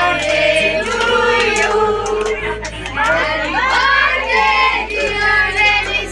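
A group of voices singing together, with scattered sharp clicks.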